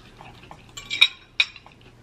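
A metal fork clinks twice against a plate as it is set down, two sharp clinks a little under half a second apart about a second in.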